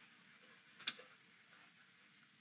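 A single short click about a second in, over faint steady room hiss, from a computer being operated at the desk.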